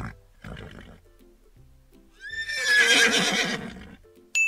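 A horse whinnying once, a call of over a second with a quavering pitch, starting about two seconds in. Light background music plays underneath.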